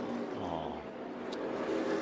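NASCAR Cup Series stock cars' V8 engines running on the track audio of a race broadcast, the engine note falling in pitch over the first second.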